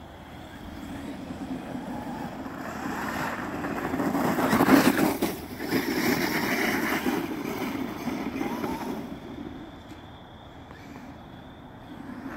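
Traxxas X-Maxx 8S electric RC monster truck driving close by, its brushless motor whirring and its tyres churning dirt and slush. It builds to its loudest about five seconds in, then fades as the truck moves away.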